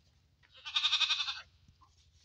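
A goat bleating once, a short, high, quavering call about half a second in that lasts under a second.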